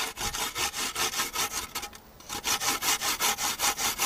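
Coconut being grated by hand on a homemade tin grater, a lard can punched with nail holes, in quick even strokes of about five a second, with a brief pause about two seconds in.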